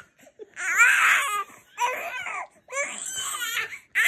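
Baby vocalizing in three loud, high-pitched outbursts, each half a second to a second long, somewhere between a cry and an excited squeal.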